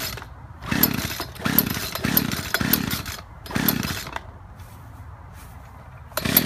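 Two-stroke gas chainsaw being pull-started, with about five quick pulls in the first four seconds. Each pull is a short burst of the engine turning over without catching, then it goes quieter. Its user suspects the engine is flooded.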